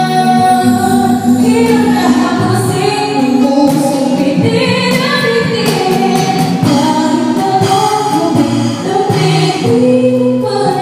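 A woman singing live into a microphone with a small band, her held notes rising and falling over guitar chords and light percussion hits.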